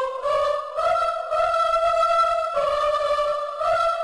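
Sampled choir from the free Symphonia VST's Concert Choir patch playing a simple melody of held notes that step up and down in pitch.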